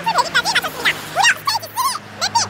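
A woman's voice sped up into rapid, very high-pitched, squeaky chipmunk-like chatter as she reads out a long list.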